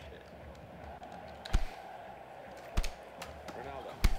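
Two dull thumps, about a second and a quarter apart, over a steady background hum.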